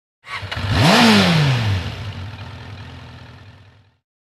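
A motorcycle engine revving once: the pitch climbs quickly and then falls away, inside a rushing noise that peaks early and fades out over about three seconds.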